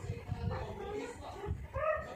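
A high-pitched whining voice: a run of short sounds that glide up and down in pitch.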